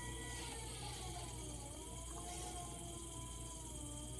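Electric potter's wheel running with a steady low motor hum and a thin whine that falls in pitch about a second in, then levels off.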